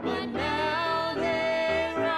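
Music: a singer holds a long, wavering note over instrumental accompaniment.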